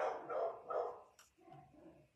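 A short voice-like sound about a second long, followed by a few fainter ones.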